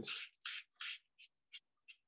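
Small water spray bottle pumped over wet watercolour paper: about six quick hissing spritzes in a row, getting shorter and fainter. The mist keeps the edge of the wash wet so it doesn't dry to a hard edge.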